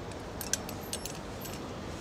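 A few light metallic clinks and jingles as a coiled steel cable lock is threaded through the spokes of a bicycle's rear wheel and around the frame.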